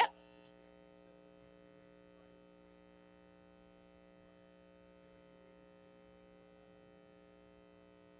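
Steady electrical mains hum made of several fixed tones, with one sharp click right at the start.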